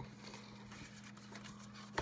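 Quiet room tone under a steady low hum, with one short click near the end as a paper cue card is handled.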